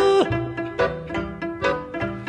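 Romanian lăutărească folk music: a long held note ends with a downward slide. Then comes an instrumental run of quick plucked or struck string notes, each dying away, over a low accompaniment.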